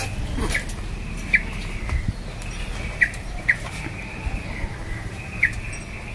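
A bird chirping: about five short, sharp chirps at irregular intervals of a second or two, over a steady low background rumble.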